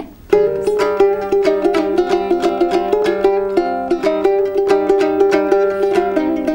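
Komuz, the Kyrgyz three-string fretless lute, strummed and picked rapidly, a fast melody over a steady low drone string. It starts after a short pause about a third of a second in.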